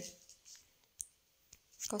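A single short, sharp click about a second in, with two fainter ticks before and after it, in a quiet pause between spoken sentences.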